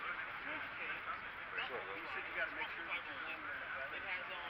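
Indistinct chatter of many people talking at once, with several voices overlapping and no single clear speaker.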